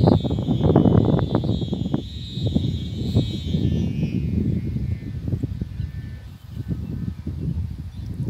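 Wind gusting against the microphone in rough, irregular buffets that ease off after the first couple of seconds. A steady high-pitched hum sounds over it at first and fades away about halfway through.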